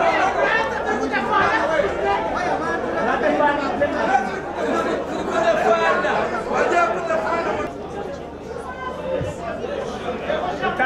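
Many people talking at once: a crowd of spectators chattering, several voices overlapping into a steady babble.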